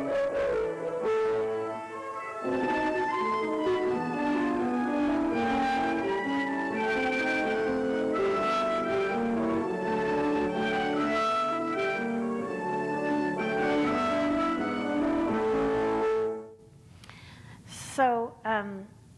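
Student violin and piano duo playing a classical piece, heard from a home-video recording. The music stops about a second and a half before the end.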